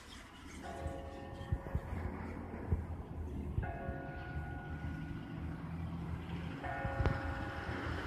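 Low steady rumble of a passenger plane passing overhead. Over it, a ringing chord of several tones sounds three times, about three seconds apart.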